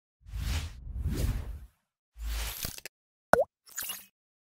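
Animated-logo sound effects: two swelling whooshes over a low rumble, a shorter low hit, then a sharp plop with a quick dip in pitch about three seconds in, followed by a brief sparkly tail.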